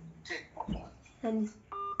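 Brief snatches of speech during a mobile phone call, then near the end a short steady electronic beep from the phone.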